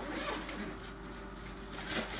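Faint rustling and a few light clicks from hands handling food and containers at a kitchen counter, over a steady low hum.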